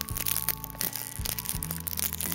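Background music with held low notes, over sharp crackling of plastic shrink-wrap being picked at and peeled off a DVD case.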